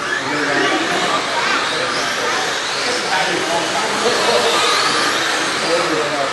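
A pack of radio-controlled modified race cars running around a dirt oval on the pace lap before the start, their motors giving a steady whirring hiss with faint rising and falling whines.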